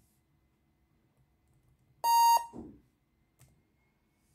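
One short, loud electronic beep from an HP Pavilion 15 laptop at its BIOS power-on password prompt, about halfway through, with a faint key click later on.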